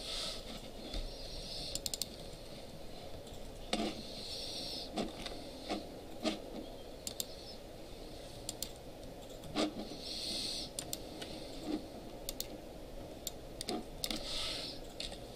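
Irregular clicks of a computer mouse and keyboard, a few strong clicks among lighter ones, over steady background room noise.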